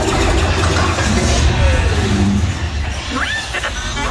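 Dark-ride show soundtrack: a loud, steady low rumble under a hissing wash of effects, with a couple of short rising chirps a little after three seconds in.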